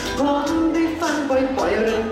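A man singing a Thai pop song live into a handheld microphone over pop music accompaniment, holding long notes.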